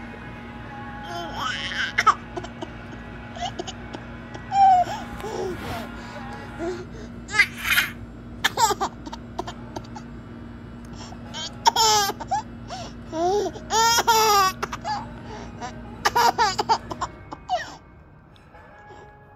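A baby laughing in a string of short, loud bursts, starting about a third of the way in and repeating until near the end, after softer babbling at the start.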